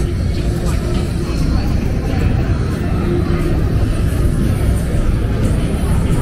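Street ambience of a busy pedestrian promenade: a steady low rumble with indistinct voices of passers-by.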